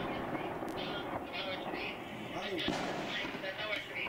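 Continuous crackle of heavy gunfire in a firefight: many rapid shots running together, with voices mixed in.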